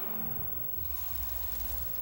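TV programme transition sound effect: a deep rumble with a hiss over it that starts suddenly, with a sharper burst of noise about a second in.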